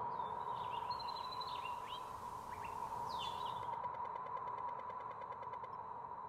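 Birds chirping in short whistled phrases over the first few seconds, over a steady hum and a low background rumble; a faint rapid ticking follows in the second half.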